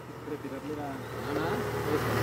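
A motor vehicle's engine on the road, growing steadily louder as it approaches.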